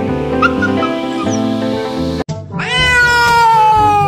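A domestic cat gives one long meow about two and a half seconds in, sliding slowly down in pitch and stopping near the end. Background music plays underneath and fills the first half.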